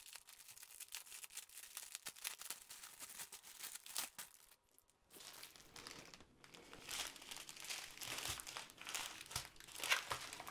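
Clear plastic packaging crinkling as a bundled strip of small bags of diamond-painting drills is handled and unrolled. It goes on unevenly, with a brief lull about halfway and louder crinkling toward the end.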